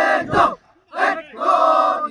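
A squad of drill recruits shouting calls together in unison: a short shout, then a longer held one about a second later.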